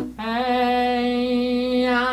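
A singer holding one steady sung note on a vowel-transition exercise, the vowel changing near the end while the pitch stays the same.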